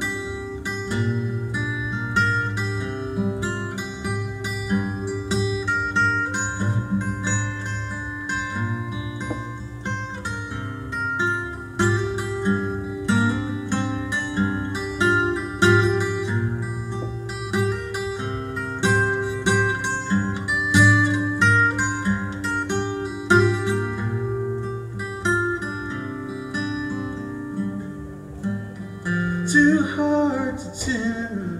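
Acoustic guitar fingerpicked in a steady repeating pattern over a sustained bass note. This is the instrumental part of a folk song, with a brief sliding pitch near the end.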